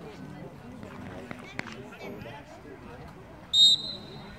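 Referee's whistle: one short, shrill blast about three and a half seconds in, signalling the kick-off. Faint voices of players and spectators carry on underneath.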